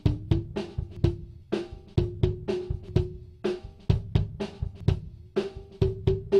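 Close-miked kick drum track, recorded with an AKG D112 inside the shell, playing a steady run of hits through a narrow, strongly boosted EQ band that is being swept upward. A ringing tone behind each hit rises in pitch and rings out strongest near the end as the boost nears the drum's cowbell-like shell resonance. That resonance is an artifact of the mic picking up reflections inside the drum.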